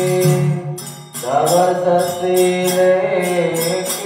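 Devotional mantra chanting: a sung voice over a steady low drone, with percussion beating about three times a second. The singing breaks off briefly about a second in, then comes back in with a rising glide.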